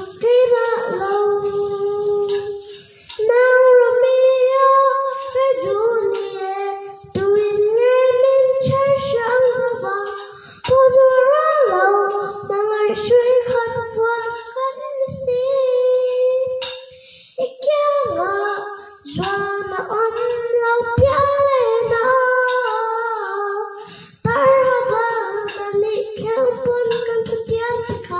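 A young girl singing a song in Mizo into a handheld microphone, in phrases of a few seconds with short breaths between them.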